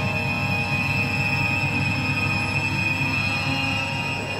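Ominous, suspenseful film score: a high tone held steadily over a restless low drone.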